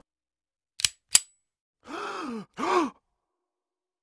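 Two sharp clicks about a quarter-second apart, then two short human vocal sounds, each rising and falling in pitch like a groan, laid in as animation sound effects.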